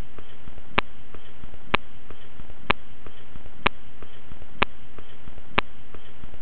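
A steady hiss with a sharp, short click about once a second, evenly spaced.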